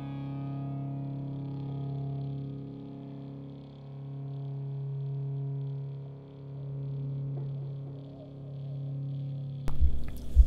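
Background music of sustained chords that swell and fade about every two seconds.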